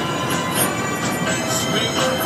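Amphibious tour boat under way, its engine and drivetrain running with a steady mechanical noise and several held high-pitched tones.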